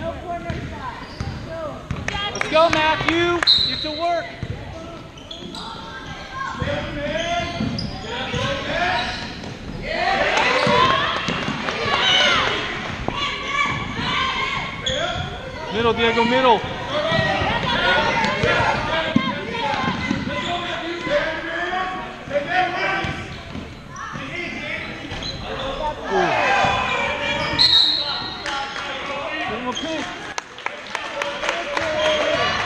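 A basketball dribbling and bouncing on a hardwood gym floor during play, with spectators talking and calling out over it, echoing in a large gym.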